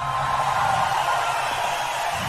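A steady, even hiss of noise with no music in it.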